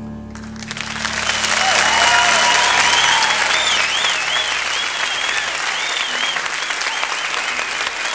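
Audience applause breaking out and swelling to full within a couple of seconds, with wavering whistles on top, while a final held low piano chord rings under it and dies away about five seconds in.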